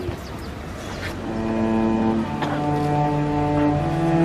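Two cellos playing slow, long-held bowed notes together, starting about a second in.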